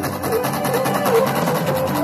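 Live Greek folk dance music: a melody of short notes over a steady dance beat.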